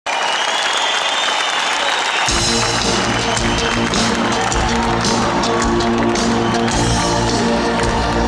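Concert audience applauding, then a live band starts playing about two seconds in, with steady chords and a beat over the crowd noise.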